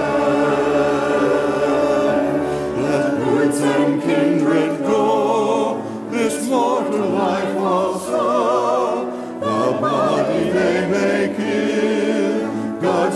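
Mixed church choir of men and women singing a sacred anthem in parts, with vibrato on the held notes.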